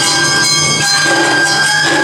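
Awa odori dance music: bamboo flutes hold long steady notes over drums and the clang of a small hand gong beating the rhythm.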